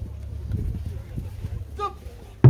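Pause between strikes of large Japanese taiko drums: the low ring of the last strike fades, a few light knocks follow, and a short vocal call sounds near the end.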